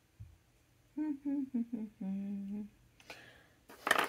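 A woman humming a short tune of a few notes, the last one held longer and lower. A brief clatter follows just before the end.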